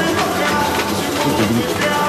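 Samba music from a samba-school drum section (bateria): dense, steady percussion with a pitched melody line over it.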